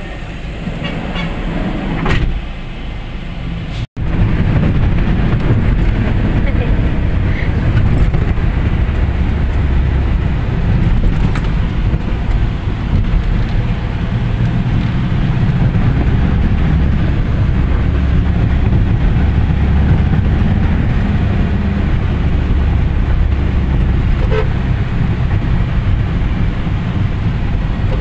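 Steady low engine and road rumble heard inside a moving van's cabin. It is quieter for the first few seconds, then after a brief cut about four seconds in it runs louder and even.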